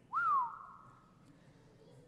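A person whistles once, a short 'whew' that jumps up and then slides down in pitch over about half a second, as a reaction to a daunting question. A faint steady tone lingers for about a second after it.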